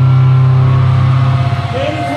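Distorted electric guitar holding one low note that rings out at the end of a song, with no drums, fading about a second and a half in as voices and a shout begin.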